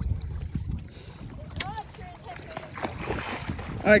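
Low rumble of wind buffeting the microphone, with faint voices in the background and a soft hiss building toward the end.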